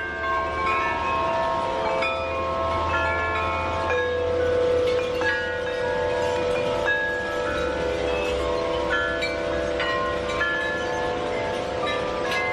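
Large tubular wind chimes ringing: a new note is struck about every second, and the clear notes overlap and ring on in long sustained tones.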